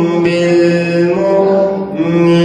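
A young man's voice chanting a Quran recitation (qirat) in long, melodic held notes, with a short breath near the end.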